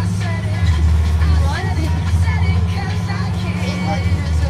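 School bus engine running steadily on the move, a low constant drone heard from inside the cabin, with children's voices chattering over it.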